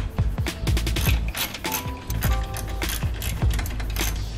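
Hand ratchet with a 10 mm socket clicking in quick, irregular runs as a radiator fan bolt is backed out. Background music plays alongside.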